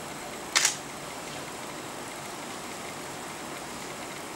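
A short, sharp double click about half a second in, over a steady background hiss.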